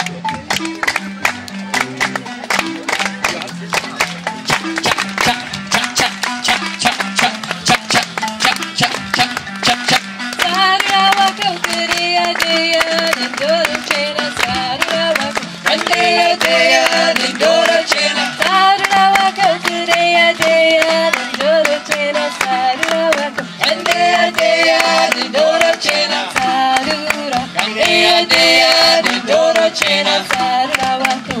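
Live marimba band with drums playing a fast, rhythmic Zimbabwean-style song; singing voices join about ten seconds in and grow louder from about halfway.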